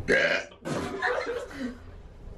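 A loud burp lasting about half a second, made on purpose to show a rude noise, followed by coughing and laughter.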